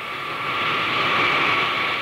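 Jet airliner flying past: a steady rushing jet-engine noise that swells to its loudest around the middle and eases slightly near the end.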